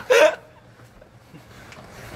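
A person's short, sharp vocal yelp right at the start, its pitch rising.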